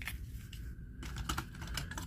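A few light clicks and taps of small die-cast toy cars being handled among the plastic compartments of a toy-car carrying case, mostly in the second half.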